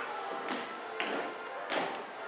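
Music with sustained tones playing in a hall, with three sharp taps about half a second, one second and near two seconds in, the middle one the sharpest: flagstaffs knocking as they are set into their floor stands.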